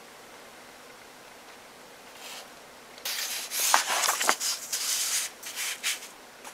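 Paper pages of an album photobook being handled and turned: a faint rustle, then from about three seconds in a run of rustling and rubbing of paper for several seconds.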